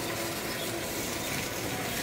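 Hand-held sparklers burning with a steady, dense fizzing crackle.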